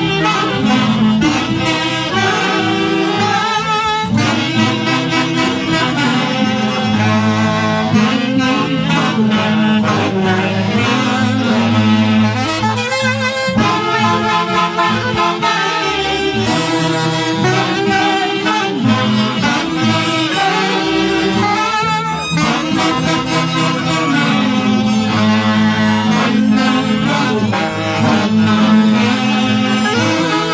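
A saxophone band playing a lively Andean dance tune live, several saxophones together over a steady beat.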